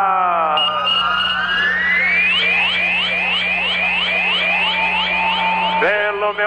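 Electronic radio sound-effect sting marking the time-and-score call: a falling pitch sweep, then a fast run of short rising chirps, about four a second, with a steady beep partway through.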